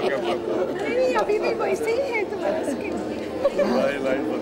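Chatter of several people talking at once, their voices overlapping, with one voice saying "can't" at the start.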